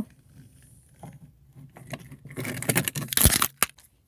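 Handling noise of a small toy engine being moved about on a car dashboard by hand: a scraping rustle past halfway, a knock, then a single sharp click near the end.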